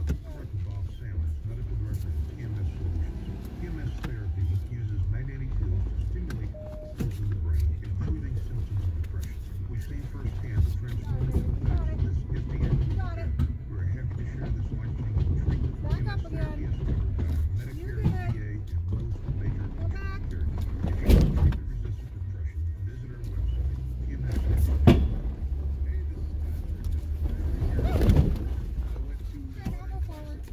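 Jeep Gladiator engine running at low speed, heard from inside the cab, as the truck backs and pulls forward on a tight rocky switchback. There are three sharp knocks in the second half.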